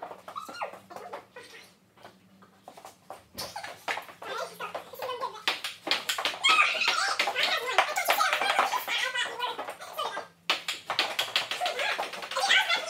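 Ping-pong rally: the celluloid ball clicking sharply off paddles and the table many times. A burst of loud high cries comes about halfway through and is the loudest sound.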